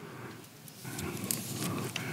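Quiet room tone in a large hall, with faint rustling and a few small clicks in the second half.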